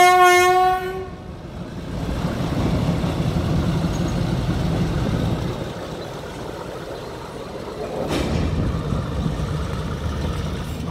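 A train horn sounds one steady single-tone blast that cuts off about a second in. It is followed by the low, steady rumble of the train moving slowly over the rails while shunting wagons, with a single sharp knock about eight seconds in.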